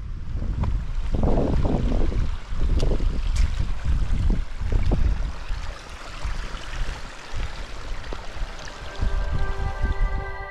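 Wind buffeting the camera microphone in gusts on an exposed mountainside, as a low, uneven rumble. It is strongest in the first half and eases off after about six seconds. Soft ambient music fades in near the end.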